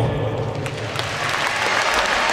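Crowd applauding in a large hall, the clapping starting as the speech ends and filling in after about a second.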